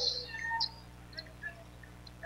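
Faint basketball-court sounds picked up by the broadcast microphones: a few short, scattered sneaker squeaks on the hardwood over a steady low hum.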